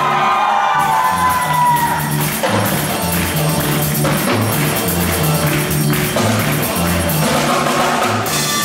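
Live band music: a male singer's held note bends and trails off over the first two seconds, then the drum kit keeps a steady beat over repeating low bass notes.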